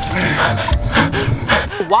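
A man gasping from the shock of sitting in ice-cold water, over background music with a steady beat; a laugh near the end.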